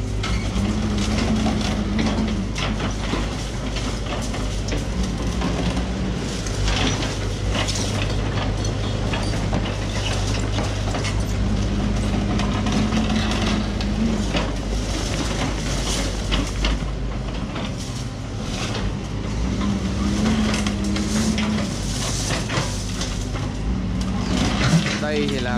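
Doosan DX140W wheeled excavator's diesel engine running steadily while its hydraulic crusher jaws squeeze concrete off scrap rebar: irregular crunching and clanking of concrete and steel, and a higher hydraulic tone that comes and goes four times, for one to three seconds each, as the jaws close.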